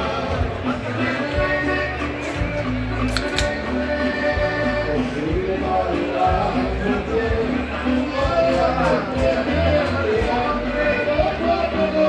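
Music playing, with a bass line that moves in steady note changes under pitched melody lines.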